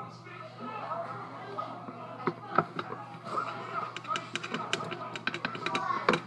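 Quiet, indistinct talk, then a run of light clicks and taps of kitchen utensils, coming faster in the last couple of seconds, over a steady low hum.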